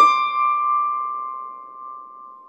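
Solo piano: a high note struck once right at the start, ringing and slowly dying away.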